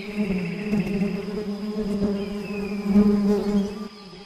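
Swarm of bees buzzing in a steady drone.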